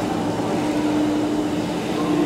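Steady fan hum of air-handling or refrigeration machinery, an even rush with one constant low tone under it.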